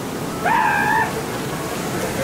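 A single high-pitched cry, rising quickly, held for about half a second and then dropping off, over a steady rushing background.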